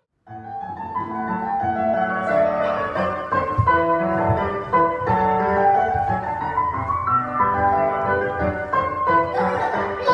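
Piano music in a classical style, starting after a brief silence at the very beginning.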